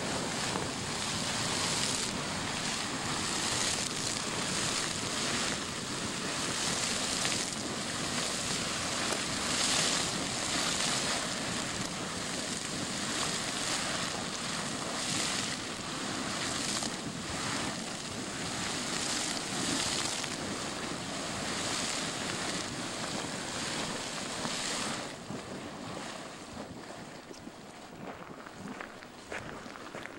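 Minute Man Geyser erupting: a steady rush of spraying water and steam that swells and fades every second or two and eases off about 25 seconds in.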